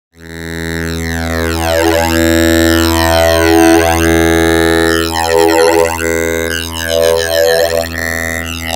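Make Noise STO oscillator drone, low and steady with many harmonics, run through both 24-stage phase shifters of a Modcan Dual Phaser in series for 48-stage phasing. Deep notches sweep down and back up through the tone about every two seconds, driven by Maths envelopes on the phase CV inputs. The sound starts abruptly at the very beginning.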